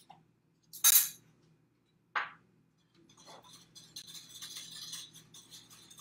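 Kitchen utensils against a glass mixing bowl: two sharp clinks about a second apart, the first the louder, then a run of quick, faint clicks of a whisk stirring the wet batter ingredients in the bowl.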